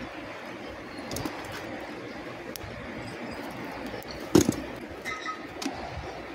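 Sand being worked in a steel casting drum with a metal scoop: a single sharp knock about four seconds in over a low background, with a bird calling.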